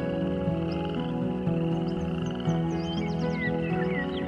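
Slow, soft relaxing music with sustained notes, layered over a pulsing chorus of croaking frogs. A few quick bird chirps come in near the end.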